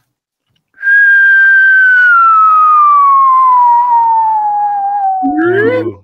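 A person whistling one long, smooth note that slides steadily down in pitch over about four and a half seconds. A short rising vocal glide follows just before the end.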